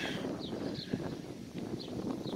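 Quiet outdoor ambience with light wind on the microphone and a few faint, short high chirps.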